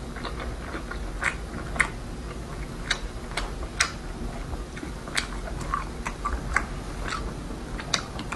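Close-miked chewing of soft red-braised pork belly, with irregular wet smacks and clicks of the mouth.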